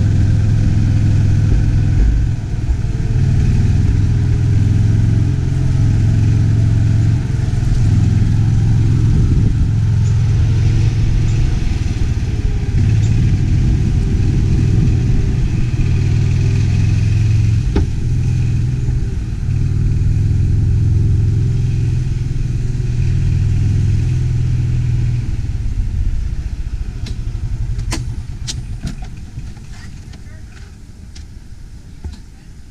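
Golf cart running along a paved cart path: a steady low motor hum with road noise. It grows quieter over the last few seconds, with a few sharp clicks near the end.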